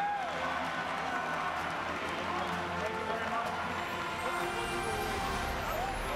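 Indistinct chatter and calls from many voices echoing around a hockey arena, with music faintly underneath.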